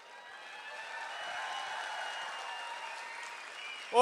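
Audience applauding in a hall, swelling about half a second in and dying away near the end.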